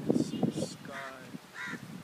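Crows cawing: two short, harsh caws, one about a second in and one near the end, with people's voices in the background.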